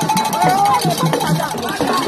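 Voices singing and calling over music with a steady beat, about three or four beats a second.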